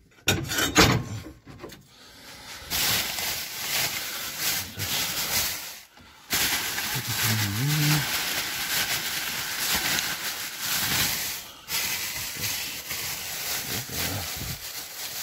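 Plastic bin bags and bread packaging rustling and crinkling as they are rummaged through inside a dumpster, after a few knocks at the start. A brief low grunt comes about seven seconds in.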